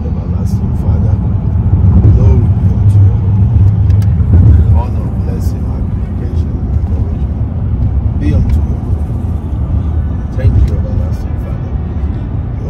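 Steady low road and engine rumble inside a moving car's cabin, with a faint voice at times.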